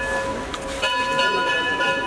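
Temple bell ringing: a strike just before, fading, then struck again a little under a second in, its several clear tones ringing on.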